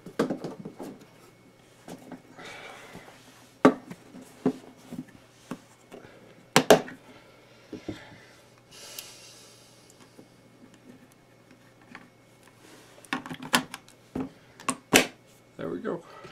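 Hard plastic clicks, knocks and rattles from a screwdriver-bit set's plastic case being opened, rummaged through and shut, with rustling between the sharper clicks. The loudest clicks come in a cluster about halfway through and again near the end.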